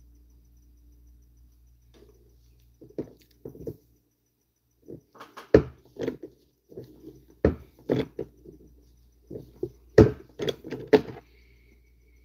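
Small objects being handled by hand: a string of sharp clicks and knocks, sparse at first and busier from about five seconds in, with a low hum underneath.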